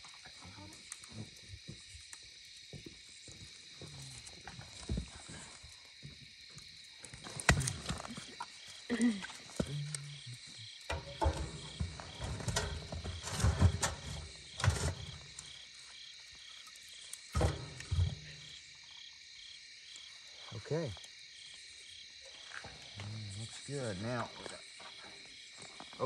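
Crickets chirping steadily, with a scatter of sharp knocks and clatter in the middle of the stretch as firewood is fed into the metal firebox under a canning pot.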